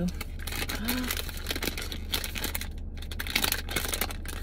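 Plastic ice cream bar wrapper being torn open and crinkled by hand: a dense run of irregular crackles.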